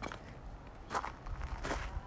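Footsteps of a person walking, three steps spaced under a second apart, over a low rumble.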